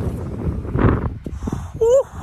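Wind rumbling on the microphone, with brief bits of a man's voice. Just before the end comes a short rising vocal sound.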